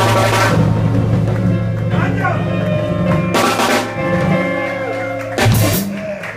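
A live blues band plays, with electric guitar and a drum kit. Cymbal crashes ring out at the start, about halfway through and again near the end.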